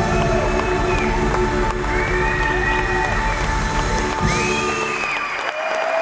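A live band's final sustained chord rings out under a cheering audience with high, gliding whistles. The band cuts off about four seconds in, leaving the crowd cheering and whistling.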